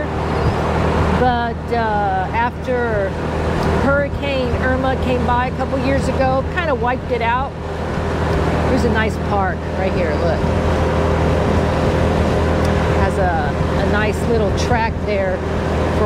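A 2015 Honda Forza 300 scooter's single-cylinder engine runs at a steady cruise, with road and wind noise, under nearly continuous talking.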